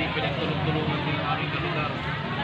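Steady low hum of an idling engine, with people talking in the background.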